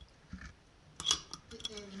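Metal lid clinking against the rim of a glass jar as it is set back on, a short cluster of sharp clicks about a second in.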